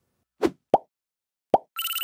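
Three short cartoon plop sound effects, two close together and a third about a second later, then a bright chime starting just before the end.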